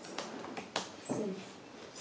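A few soft, sharp computer-keyboard keystroke clicks, with a brief faint pitched sound about a second in.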